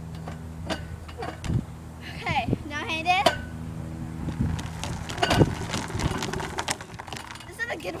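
Light metallic clinks and knocks from a playground spinning roller and its metal handle frame as a child stands on it, over a steady low hum. Brief high voice sounds come about two to three seconds in.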